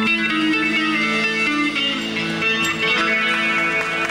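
Live band playing the closing instrumental bars of a song, led by an electric guitar playing a run of short, bright notes over held chords.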